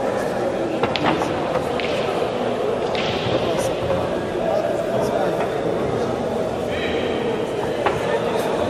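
Pool cue striking the cue ball, then balls clicking together about a second in, with another sharp click near the end. Over a steady murmur of spectators talking in a large hall.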